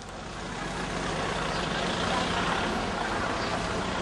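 Outdoor background noise with indistinct voices, fading up over about the first second and then steady.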